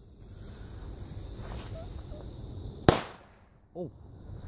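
A single firecracker bang about three seconds in, sharp and short, with a brief echoing tail in the woods. The tester judges this one a poor firecracker.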